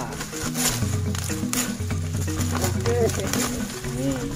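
Background music with a steady bass line, over a few sharp crackles of dry banana leaves being cut with a knife.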